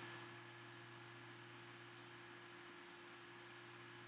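Near silence: the recording's background, a faint steady hum with light hiss.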